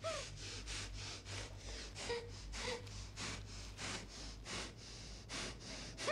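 A gagged woman's rapid, heavy panting in short quick breaths, with a couple of faint muffled whimpers about two seconds in, over a low steady hum.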